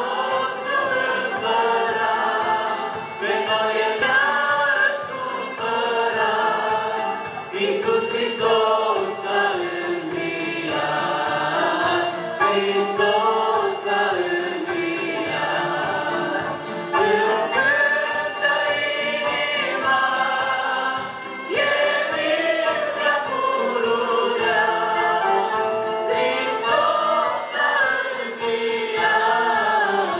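A church praise group of men and women singing a gospel hymn together into microphones, amplified through the hall's loudspeakers.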